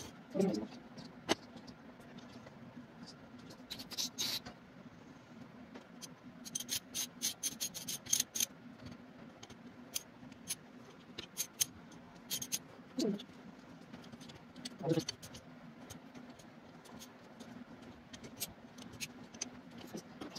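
Small metal clicks and taps of a CAV diesel injector pump's parts being handled and fitted by hand during reassembly, in quick clusters with pauses between, over a steady low hum.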